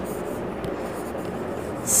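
Marker pen writing on a whiteboard.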